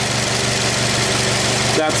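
Car engine idling steadily, with wind noise on the microphone.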